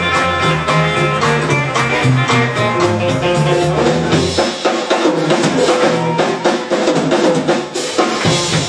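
Live country band playing an instrumental passage on upright bass, electric guitar, pedal steel guitar and drum kit, the drums keeping a steady beat. The low bass notes drop out about halfway through, leaving drums and guitars.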